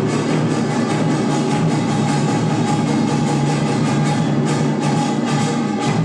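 Korean traditional percussion ensemble playing: janggu hourglass drums and a buk barrel drum struck in a fast, dense rhythm, with a jing gong ringing underneath.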